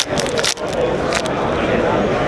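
A 2017 Topps Allen & Ginter card pack wrapper being torn open by hand, a few sharp crinkles in the first half-second, over the steady babble of a crowded hall.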